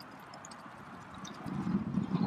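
Canada geese feeding on gravelly ground: scattered small clicks and taps of beaks pecking at seed among pebbles, with a louder scuffing noise building in the second half.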